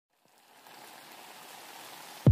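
A faint, steady hiss of noise that fades in over the first half second.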